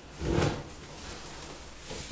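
A knock and rustle of things being handled and moved about on a clothes closet floor, loudest about half a second in, then quieter shuffling.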